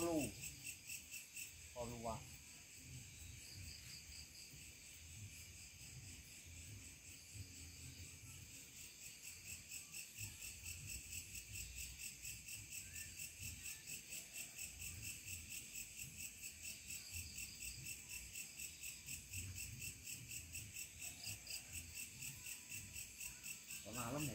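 Night insects, likely crickets, chirping in a faint, steady, high-pitched chorus of rapid even pulses.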